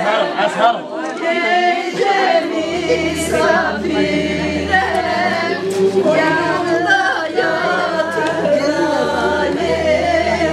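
A group of women singing together, several voices at once, with a low steady hum underneath from a few seconds in.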